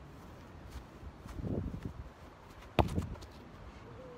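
Muffled footsteps on grass from a short run-up, then a single sharp thud of a football struck hard by a foot about three seconds in.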